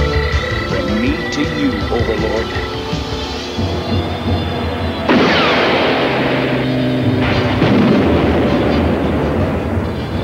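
Cartoon action score music, broken about five seconds in by a sudden loud noisy blast with a falling whoosh. A second stretch of rushing, blast-like noise follows from about eight seconds on, over the music.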